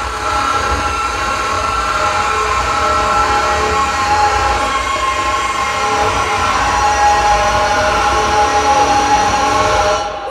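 Loud, sustained wall of distorted noise-music drone from live electronics, with several steady horn-like tones held over a low rumble. It cuts off abruptly at the end.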